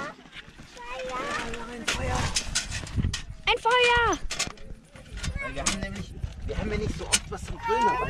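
Wind buffeting the microphone in low gusts, with short clicks and rustling as a folding metal grill is taken out of a bag and set down. A child's high-pitched voice calls out once, falling in pitch, about halfway through.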